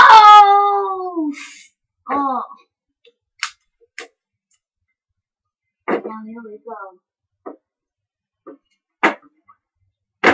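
A child's voice making wordless falling cries and gliding vocal noises as sound effects for toy wrestlers, with a few sharp clicks and knocks of plastic action figures against a toy wrestling ring. The loudest cry comes at the start; a second, shorter one about two seconds in and a cluster of gliding noises near the six-second mark.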